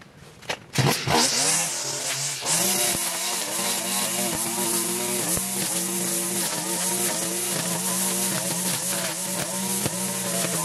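Petrol string trimmer starting about a second in, revving up, then running with its engine pitch rising and falling over and over as it cuts grass.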